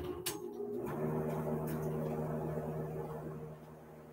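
A couple of short clicks, then a steady low machine hum made of several steady tones, which drops away about three and a half seconds in.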